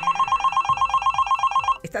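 Telephone ringing: one rapid trilling ring that starts sharply and stops after nearly two seconds.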